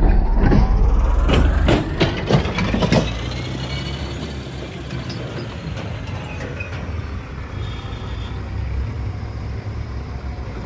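Diesel engines of a JCB 3DX backhoe loader and a Tata tipper truck running as they drive past close by on a dirt track, a steady low rumble. There are several knocks in the first three seconds, after which it settles to a steadier drone.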